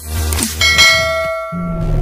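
A single bell-like ding sound effect that rings out and fades over about a second, with a short click just before it, over electronic music with a deep bass.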